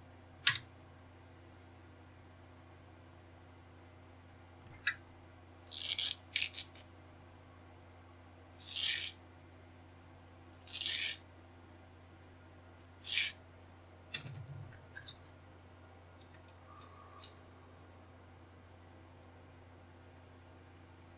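Hands working plastic model-kit parts and hobby tools on a workbench: a string of about eight short, hissy scrapes and rattles at irregular intervals, with a brief low thump about fourteen seconds in.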